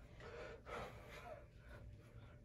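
Faint, hard breathing of men straining through push-ups in a row, with a couple of stronger breaths in the first second or so.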